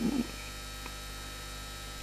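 Steady electrical mains hum with a faint hiss.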